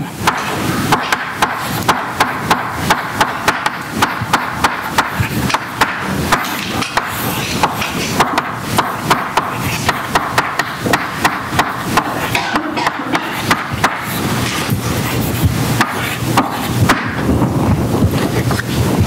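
Chalk tapping and scraping on a blackboard while writing: a quick, irregular run of sharp clicks, about three a second.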